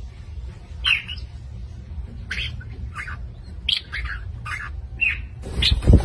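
Red-naped ibis calls: a series of short, harsh squawks, about eight in six seconds, over a steady low rumble. A louder, fuller burst of sound comes near the end.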